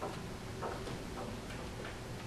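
A few faint, irregularly spaced clicks and taps over the steady hum of a meeting room.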